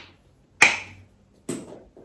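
Plastic flip-top cap of a shower gel bottle snapping open about half a second in, followed by a second, quieter sound about a second later.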